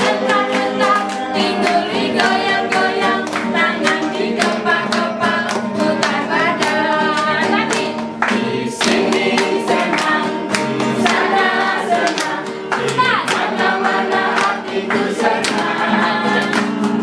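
A group of voices singing together to acoustic guitar, with hands clapping along in a steady beat.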